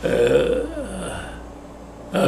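An elderly man's low, voiced laugh lasting about a second, falling in pitch at the end.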